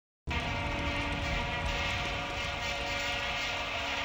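Vuvuzelas blaring together in a steady, dense drone of many plastic horns. It starts a moment in, after a brief silence, and holds without a break.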